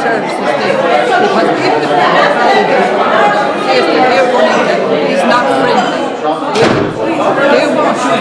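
A woman speaking steadily into a microphone in a large room.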